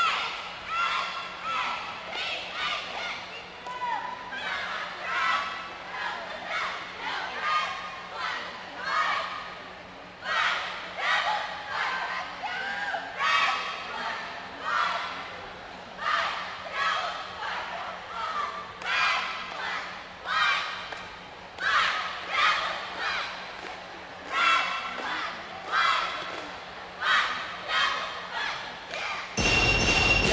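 A cheerleading squad shouting a rhythmic chant in unison, echoing in a large hall. Near the end, loud recorded routine music cuts in suddenly.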